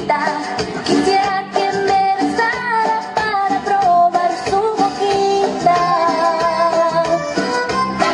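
A woman singing a Spanish popular song into a microphone, with a live band of drums, electric guitar and horns accompanying her through a PA; she holds long notes that slide and waver in pitch.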